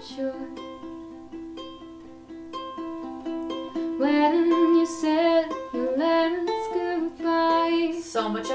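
Solo ukulele finger-picking a slow melody of separate plucked notes; about four seconds in a woman's singing voice comes in over it.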